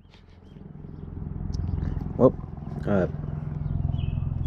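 Car engine idling with a low, steady rumble that fades up over the first couple of seconds. Two short vocal sounds come about two and three seconds in.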